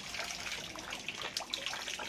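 Steady trickle and splash of running water feeding a fish pond, with small drips and splashes scattered through it.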